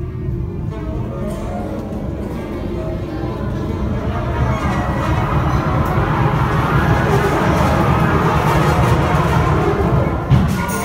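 Student concert band of woodwinds and brass, tubas among them, playing a piece together, swelling steadily louder through the passage.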